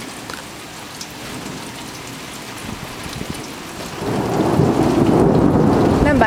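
Steady rain falling, then about four seconds in a loud roll of thunder sets in and keeps rumbling low.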